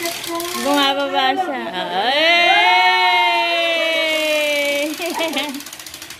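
A person's voice holding one long, slightly falling note for about three seconds, with shorter vocal sounds before and after it.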